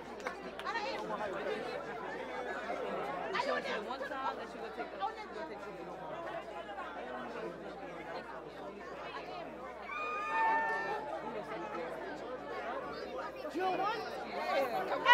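Crowd chatter, many people talking at once with no single clear voice, and a short stepped high tone about ten seconds in.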